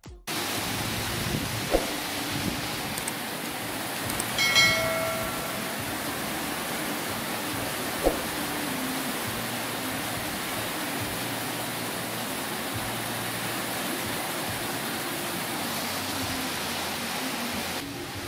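Heavy tropical downpour: a steady hiss of rain pouring onto a roof and the ground. About four and a half seconds in there is a short pitched tone, the loudest sound, and there are single sharp knocks at about two and eight seconds.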